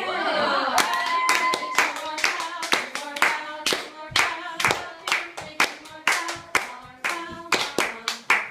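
A small group clapping in a steady rhythm, about three claps a second, with voices cheering at the start and singing along over the claps.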